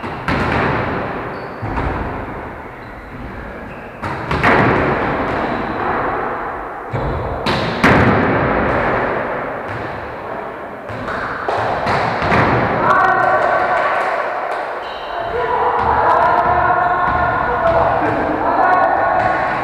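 Volleyball being served and struck during a rally: a series of sharp thuds of hands hitting the ball, each ringing on in the echoing gym hall. Players call out to each other in the second half.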